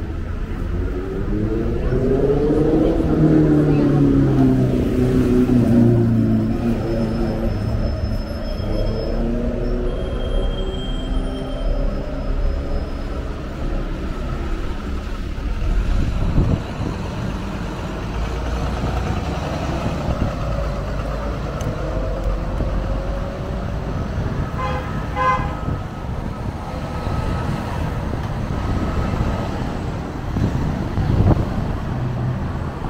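Busy road traffic with a double-decker bus passing close: its engine rises in pitch over the first few seconds as it pulls away, then eases off and fades. About 25 s in, a quick series of short beeps sounds over the steady traffic.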